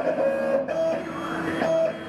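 Vinyl cutting plotter's motors whining as it cuts sticker vinyl, the carriage and roller moving in short runs so the whine shifts from one steady pitch to another every fraction of a second.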